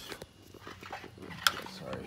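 Handling noises as wire and plastic trimmer line are worked by hand: a run of light rattling clicks, then one sharp click about one and a half seconds in.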